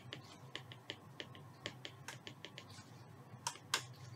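Stylus tapping and scratching on a tablet screen while handwriting, heard as irregular light clicks a few times a second, with two louder clicks near the end.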